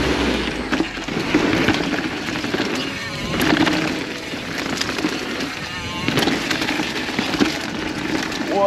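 Orbea Occam mountain bike ridden fast downhill: the rush of tyres over dirt and a wooden ramp, with scattered knocks and rattles from the bike over the rough trail, under steady wind noise on the helmet-mounted microphone.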